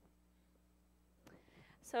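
Near silence with a faint low room hum, then a woman's voice resuming just before the end.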